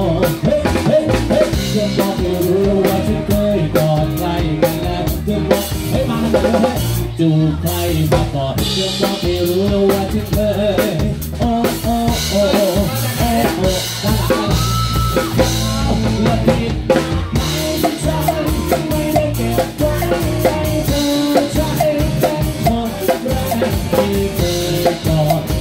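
Live band playing, with the drum kit loud and close: fast snare, rimshot and bass drum hits and cymbals over the band's pitched instruments.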